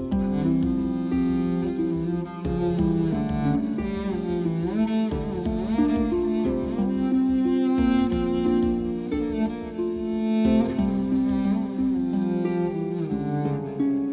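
Dramatic background music: a slow melody of sustained, wavering notes held over a low accompaniment.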